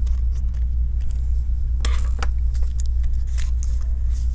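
A steady low hum runs under scattered light clicks and knocks. These come from a Phillips screwdriver backing out the battery screws in an open laptop chassis, and from the battery being handled and lifted out of its bay toward the end.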